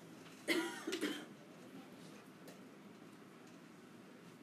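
A person coughing: two short coughs in quick succession about half a second in, against faint room tone.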